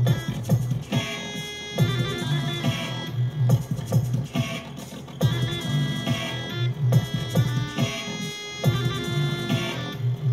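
Crumhorn, a buzzy medieval double-reed wind instrument, playing a short line in the Phrygian dominant scale that sounds Middle Eastern, repeated about every two seconds. It plays within a slow dub mix of drums and synth bass.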